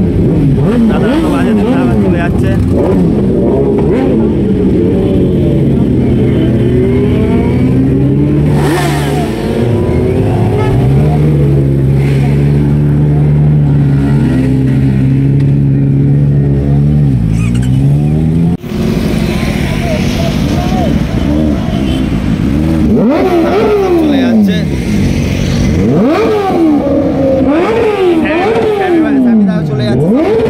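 Sport motorcycle engines revving hard: repeated blips of the throttle that sweep up and fall back, with a stretch in the middle held at steady high revs. Crowd voices carry under the engines.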